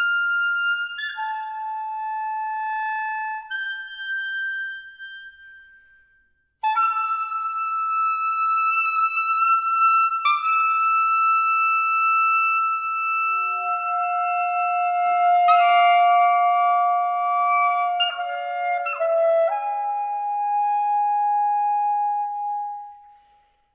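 Saxophone quartet (soprano, alto, tenor and baritone saxophones) playing microtonal music in long held notes. One phrase dies away about six seconds in, and after a short gap the voices come back together, stacking sustained notes into chords that shift several times.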